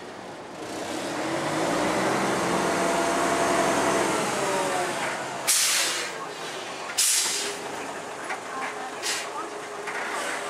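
Diesel engine of a Mitsubishi FUSO front-loader garbage truck revving up for about four seconds while working its hydraulic lift arms, then dropping back. Two sharp bursts of air hiss come a second and a half apart past the middle, and a shorter one near the end.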